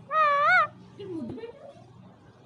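A pet parakeet calling: one loud call of about half a second with a wavering pitch, then a fainter call about a second in that falls and then rises.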